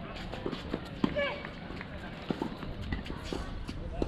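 Tennis ball being struck by rackets and bouncing on a hard court during a rally, a series of sharp pops with the loudest hit about a second in.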